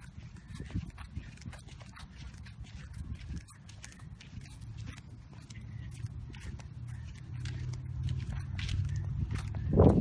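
Footsteps of the person holding the phone, walking on pavement, heard close on the phone's microphone as a string of short clicks over a low rumble of handling noise. A low hum grows louder over the last few seconds.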